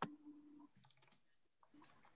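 Near silence over a video-call line, with one sharp click at the start and a few faint scattered clicks after it, over a faint low hum.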